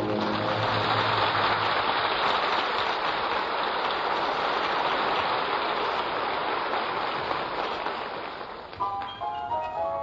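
Studio audience applauding in a 1944 radio broadcast recording, just as an orchestral number ends. About nine seconds in, the applause dies away and a new tune begins with quick mallet-percussion notes.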